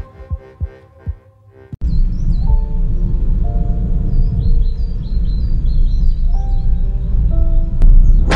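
A music track ends and fades away. About two seconds in, a deep, steady rumble starts, with birds chirping and a few held musical notes over it, typical of a commercial's sound design for a drive along a country road.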